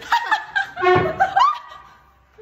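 A woman laughing loudly in high-pitched peals that die away about one and a half seconds in.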